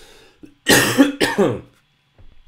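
A man coughing once to clear his throat, a harsh burst lasting under a second that is louder than his speech around it.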